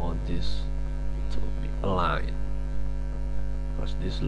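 Steady electrical mains hum, a constant low buzz with overtones, running through the whole recording.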